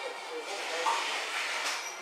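A person blowing on a chopstick-load of hot ramen noodles to cool them: a breathy hiss that grows louder toward the end.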